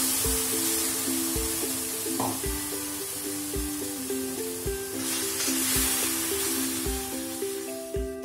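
Background music, a simple melody over a steady beat about once a second, laid over sizzling from tomato purée just poured onto hot oil and fried onion masala in a kadai; the sizzle swells at the start and again about five seconds in.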